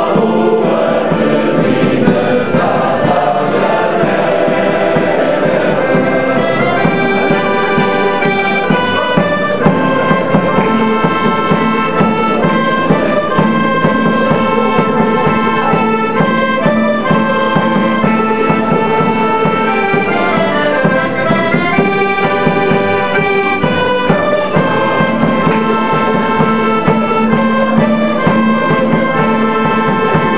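Portuguese folk ensemble playing: a men's choir sings over strummed guitars for the first few seconds, then an instrumental passage follows, its melody led by accordion over guitars, mandolin and a hand drum.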